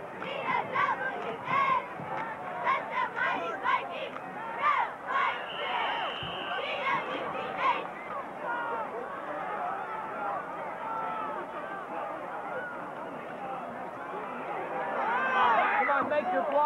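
Crowd of high school football spectators and sideline players, many voices overlapping in chatter and shouts. It is louder in the first half and again near the end. A brief high steady tone sounds about six seconds in.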